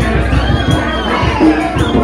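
A choir singing, with crowd cheering and high shouts from voices rising over it, and a quick, regular low beat underneath.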